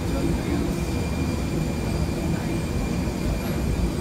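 Steady low rumble of a parked airliner heard at its boarding door, with faint murmuring voices of passengers.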